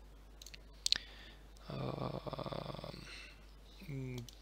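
A single mouse click about a second in, then a man's wordless, steady-pitched hum lasting over a second.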